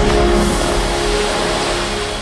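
Show soundtrack music with a loud rushing whoosh that hits just at the start and fades over about two seconds under held tones.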